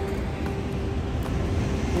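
Steady rush of ocean surf and wind, heavy with low rumble, with a thin steady tone running under it.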